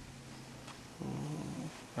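A faint kick-drum sample, chopped from a drum loop, played back on a computer about a second in: a short, low, pitched tone that starts and stops abruptly.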